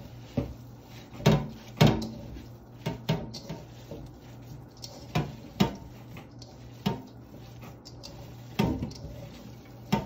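Hands kneading a raw ground-meat kibbeh mixture in a stainless steel mixing bowl sitting in a sink, the bowl knocking against the sink irregularly, about ten dull knocks, the loudest two close together a little over a second in.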